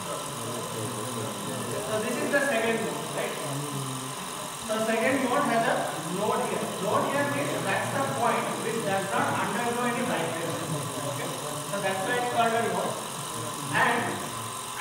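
A man's voice talking over a steady low hum from the small variable-speed electric motor that shakes a string to show its vibration modes.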